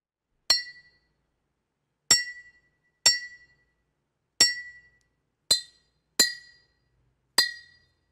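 Glass struck seven times at uneven intervals, each a sharp clink that rings briefly at the same clear pitch.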